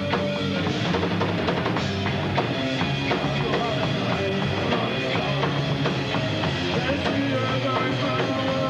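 Live stoner rock band playing: electric guitar over a steady drum kit, loud and continuous.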